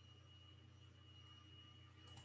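Near silence: room tone with a faint steady low hum and a thin high whine.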